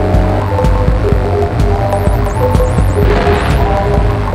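Live eurorack modular synthesizer music, loud: a throbbing bass drone under short blips of pitched notes. Rapid high chirps sweep up and down in pitch about two seconds in, and a burst of noise follows about three seconds in.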